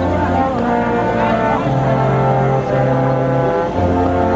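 Brass ensemble of trumpets, horn, trombones and tuba playing, the tuba holding long low notes that shift in pitch while the upper parts move above them.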